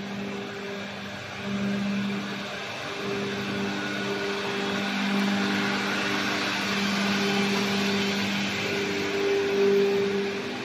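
Steady hum of factory machinery: electric drive motors running, with a low hum that swells and fades every second or two over a steady hiss.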